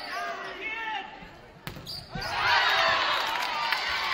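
Volleyball rally sounds: players' voices calling out, a single sharp hit of the ball about a second and a half in, then many voices shouting at once.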